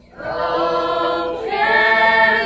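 A small group of voices, mostly young women, singing together in long held notes. The singing starts a moment in after a short pause and moves to a new chord about a second and a half in.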